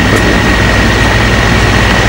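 Steady low hum and hiss with a thin, steady high whine.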